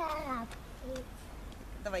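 A young child's short, high-pitched vocal whine that falls steadily in pitch over about half a second, followed by a brief faint low hum about a second in.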